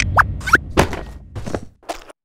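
Cartoon sound effects: a run of short thunks and taps, about six in two seconds, with two quick rising squeaks within the first second.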